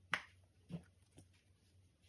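Bubbles of a silicone pop it fidget toy being pushed in with a finger, popping three times in the first second or so, the first the loudest.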